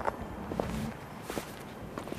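Footsteps of two people walking slowly on packed snow, a few separate steps about half a second apart.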